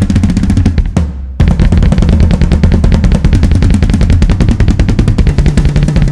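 Recorded instrumental music led by a drum kit: fast, dense snare and bass-drum playing over a deep bass. About a second in the drums drop out briefly, leaving only the low bass, then they come back in.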